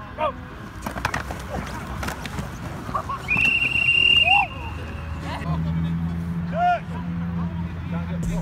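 A coach's whistle blown once, a single steady high note about a second long, a few seconds in, over shouts from players across the field and a few sharp thumps of contact. A low steady hum starts about halfway through.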